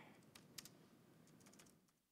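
Faint computer keyboard typing: a few scattered keystrokes as a line of code is deleted and retyped.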